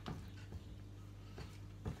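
A spoon knocking against a mixing bowl while stirring water into flour for dough: a few soft, irregular knocks, the loudest near the end, over a low steady hum.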